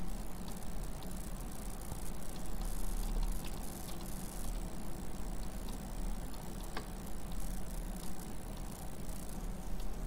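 Steady background hiss from the recording microphone with a low electrical hum, and a few faint clicks about three and a half and seven seconds in.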